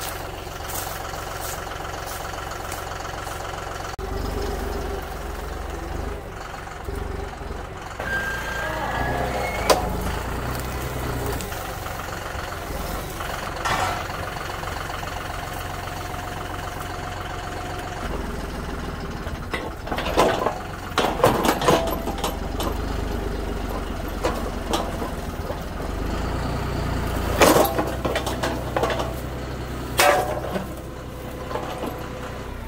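Compact tractor engine running and working under changing load as its front-loader grapple pulls fence posts out of the ground. Sharp cracks and clanks come in the second half, as posts snap out, and the loudest comes a little before the end.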